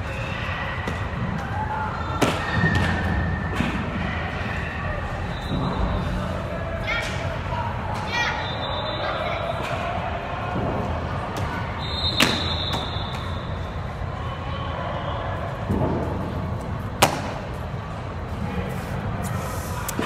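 Loud, echoing din of a big indoor sports hall: distant voices and shouts over a steady wash of noise, broken by a few sharp thuds, the strongest about 12 and 17 seconds in.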